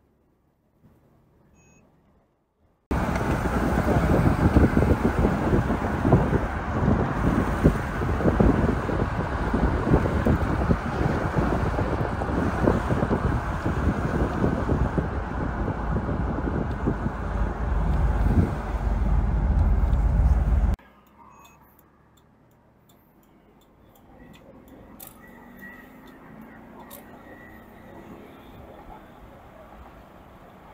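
A 1998 Bentley Azure convertible on the move: a loud, deep rush of wind and road noise that cuts in sharply a few seconds in and cuts off abruptly about two-thirds of the way through. After that the car's running goes on much more quietly, as a low hum.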